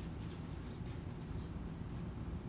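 A steady low rumble with a few faint, short high chirps in the first half.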